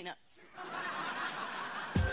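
Studio audience laughing. The laughter swells about half a second in and holds.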